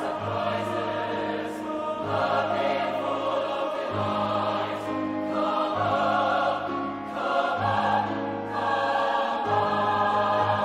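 Mixed SATB choir singing with piano accompaniment, holding full chords that change every second or two.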